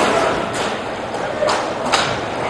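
Roller hockey rink ambience in a large echoing hall: a steady hiss with faint distant voices and a few sharp knocks, about half a second in and twice near the end.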